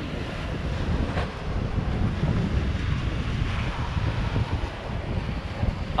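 Wind buffeting the microphone as a steady low rumble, with the wash of sea surf behind it.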